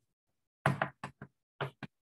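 Chalk knocking against a blackboard as it writes: five short, sharp knocks starting about half a second in, the first a little longer than the rest.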